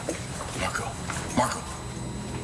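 Low sustained notes of a soft background score, with two short, wordless voice sounds that slide upward in pitch, about half a second and a second and a half in.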